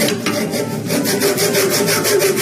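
Small hand frame saw cutting a slit into the spine of a book clamped in a press, with quick, even back-and-forth strokes: sawing a kerf to sink a binding thread into the spine.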